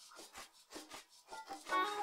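Quiet start of a song's 'other instruments' stem (everything but vocals, bass and drums), isolated by SpectraLayers 11's stem separation: soft short strokes about five a second, with held synth tones coming in during the second half.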